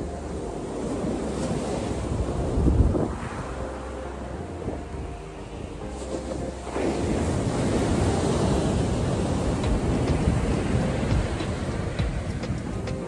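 Ocean surf breaking and washing up a sand beach, with wind buffeting the microphone. A loud rumbling gust comes about three seconds in, and the surf grows louder and stays up from about seven seconds on.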